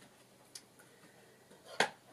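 Two small clicks against quiet room tone: a faint one about half a second in, and a sharper, louder one near the end.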